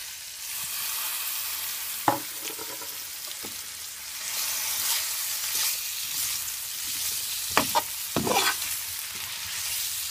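Beef, bell peppers and onions sizzling in a hot pot, the sizzle growing louder about four seconds in. A metal spoon stirs and scrapes against the pot a few times, once about two seconds in and again near the end.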